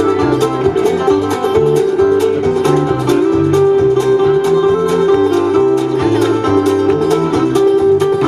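Live bluegrass band playing an instrumental passage: banjo and acoustic guitar over upright bass and fiddle, with a steady drum beat of evenly spaced ticks.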